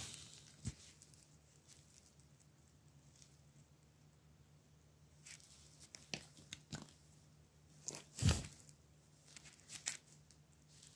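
Sparse faint clicks and scrapes of parts being handled on a solderless breadboard, as the copper work coil and then the film capacitor are pulled from its contact strips; the sharpest click comes about eight seconds in.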